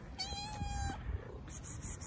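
Tabby cat giving one meow, a steady call just under a second long, asking for food.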